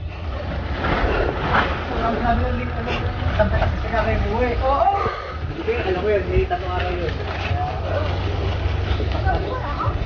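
Motorcycle running at low road speed, a steady low rumble of engine and wind, with indistinct voices over it in the middle.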